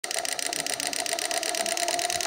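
Homemade miniature diesel engine model driven by a small electric motor, running with a steady whine and a rapid, even ticking of about a dozen clicks a second.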